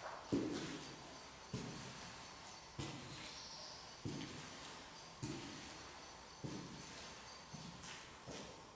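Slow, evenly paced footsteps on a hard floor, one step about every second and a quarter, each with a short echo.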